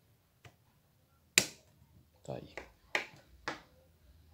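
Sharp clicks from a pickup tailgate handle mechanism worked with needle-nose pliers as a small retaining clip is squeezed into place: one loud snap about a second and a half in, then two more clicks near the end.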